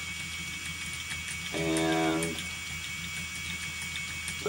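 Phoenix electric motor spinner running steadily as it spins flax, its flyer whirring with a constant high whine over a low hum. A short, held vocal 'um' sounds about halfway through.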